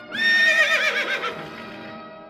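A horse whinnying: one loud call that starts on a held high note and breaks into a rapid quavering wobble, fading over about a second and a half. Background music plays underneath.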